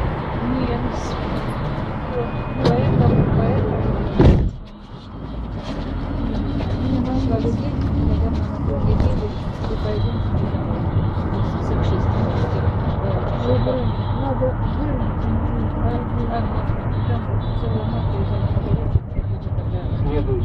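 Riding inside a moving city bus: a steady low engine and road rumble, with passengers talking in the background. A sharp, loud knock about four seconds in is followed by a brief dip in the noise.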